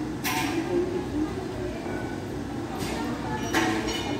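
Indistinct background voices over steady street noise, with three short hissing bursts: one just after the start, one near the three-second mark, and one near the end.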